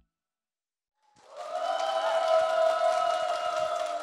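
About a second of silence, then a studio audience applauding, with music held under the clapping.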